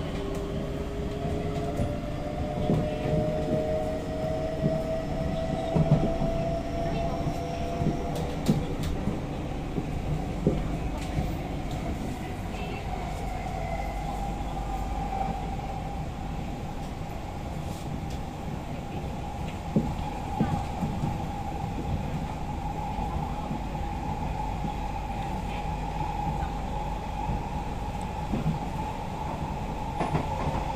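SMRT C151B metro train heard from inside the carriage as it pulls away: the traction motor whine rises in pitch for the first several seconds as the train accelerates, then settles into a steady hum at running speed. Underneath is a constant wheel-and-track rumble with occasional knocks.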